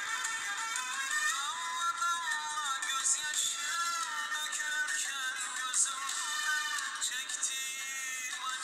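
A song: a singing voice over instrumental accompaniment, thin-sounding with almost no bass.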